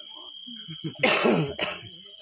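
A person coughing hard once, about a second in, followed by a shorter cough, over a faint steady high whine.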